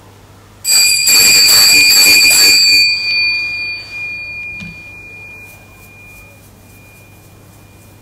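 Altar bells shaken at the consecration of the Host, starting under a second in and ringing loudly for about two seconds, then left to ring out and fade over several seconds.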